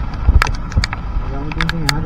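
Wind rumbling on the microphone of a camera on a moving motorbike in the rain, with sharp ticks of raindrops striking it. A voice comes in over it for the last half second.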